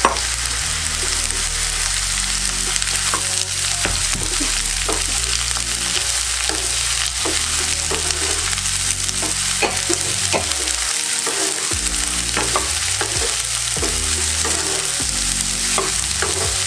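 Cubes of sponge gourd (gilki) sizzling steadily in hot oil in a non-stick kadai while a wooden spatula stirs them, with frequent light scrapes and knocks of the spatula against the pan.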